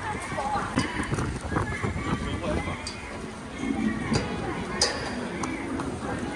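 Street ambience with indistinct nearby voices and a few short sharp clicks and taps, the loudest about five seconds in.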